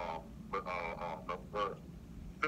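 A person talking, the words unclear.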